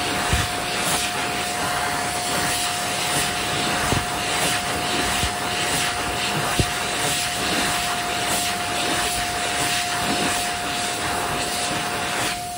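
PHS Airstream Pure hand dryer running with hands held under it: a steady rush of air with a constant whine from the motor.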